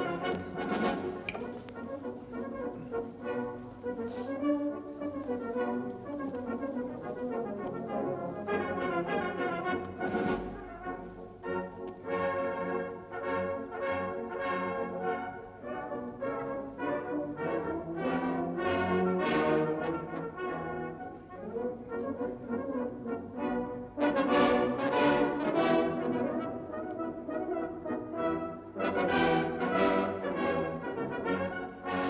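Brass music playing, a tune carried by several brass instruments.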